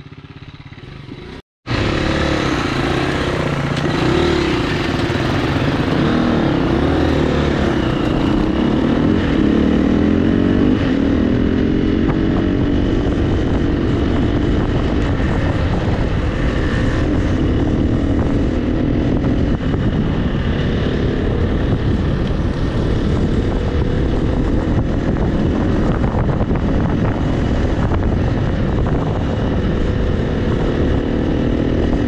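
KTM 350 EXC-F four-stroke single-cylinder dirt bike engine running, quieter for the first second and a half, then loud under way on a gravel road, its note rising and falling with the throttle.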